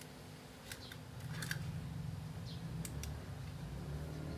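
Faint, scattered light clicks, a handful over a few seconds, with a low rumble setting in about a second in.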